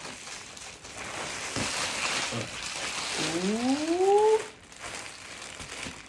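A mailer package being torn open and its packaging rustled and crinkled, stopping about four and a half seconds in. A short rising vocal 'ooh' sounds over it a little past three seconds.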